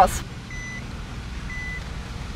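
Car's in-cabin reverse warning beeper: a short high beep about once a second while the car backs into a parking space, over a low engine hum.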